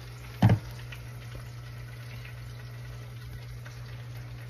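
Faint sizzle and bubbling of pans cooking on a kitchen stove over a low steady hum, with a single sharp thump about half a second in.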